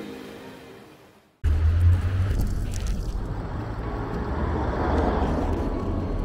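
Intro music fading away, then about a second and a half in an abrupt start of street traffic sound: steady road noise with a low rumble, swelling around the middle as a vehicle passes.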